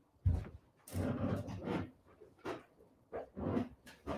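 Small handling sounds at a worktable: a soft thump about a quarter second in, then a few brief rustles and taps as a tin-can bangle and small craft pieces are picked up and turned over.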